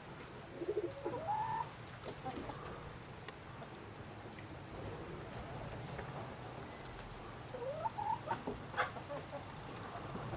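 Faint bird calls: short rising calls in two brief clusters, one near the start and one near the end, over a low steady background hum.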